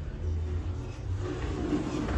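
Steady low mechanical hum inside a Montgomery hydraulic elevator cab, with a low rumble that swells in the first second and again near the end.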